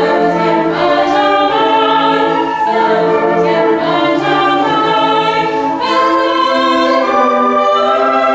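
A young woman singing a solo with sustained notes, accompanied by a school concert band with flutes.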